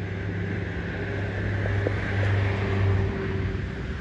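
A motor vehicle's engine running nearby, a steady low hum that grows louder in the middle and eases off near the end.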